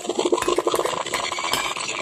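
Sound effect from a radio drama broadcast marking a jump back in time: a fast, even run of clicks.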